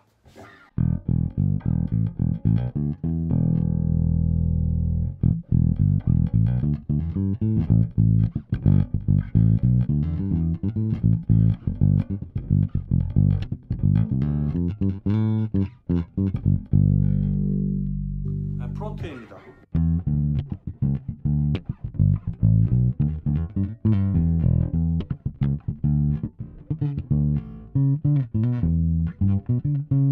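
Fender Jazz Bass fitted with Delano pickups and a Delano preamp, played fingerstyle: a continuous run of plucked bass lines. Partway through, one held note rings out and fades for a couple of seconds before the playing picks up again.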